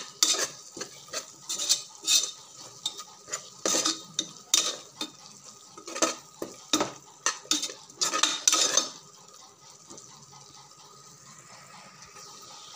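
A metal spatula scraping and knocking against the inside of a pressure cooker pot as a tomato-onion masala frying in oil is stirred, with a light sizzle underneath. The strokes come irregularly, about one or two a second, and stop about nine seconds in, leaving only the faint sizzle.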